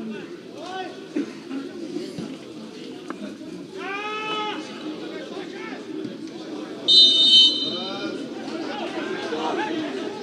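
A high-pitched referee's whistle, one blast of about half a second about seven seconds in and the loudest sound here, over players' and spectators' shouts and calls across the pitch.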